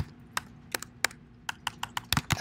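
Typing on a computer keyboard: a run of separate keystrokes at an uneven pace.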